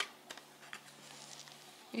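A sharp click, then a few faint light taps from a wooden toy puzzle being handled on a children's play desk, over a faint steady low hum.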